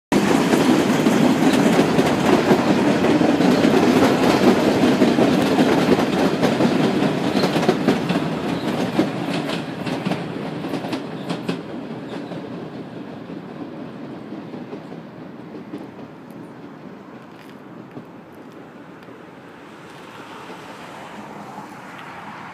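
MBTA Red Line subway train passing close by, its wheels clattering over the rails, loud at first and then fading away over about ten seconds, with a run of sharp clicks as it goes. A faint steady hum remains after it has passed.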